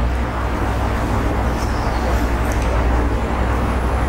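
Steady low hum with an even rumbling background noise, level throughout, in a pause between sentences.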